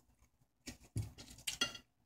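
A few short clinks and knocks of a plate of potato wedges being handled: three brief sounds spread across the two seconds, with quiet between them.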